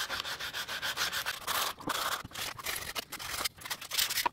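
Sandpaper rubbed by hand on wood, a folded strip worked inside a small wooden box in quick back-and-forth rasping strokes.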